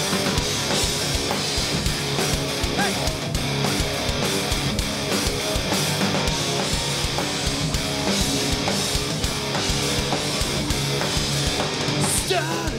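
Live rock band playing loud: distorted electric guitars and bass over a drum kit keeping a steady driving beat.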